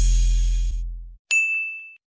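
Background music dies away about a second in, then a single bright ding sound effect rings out and fades over about half a second.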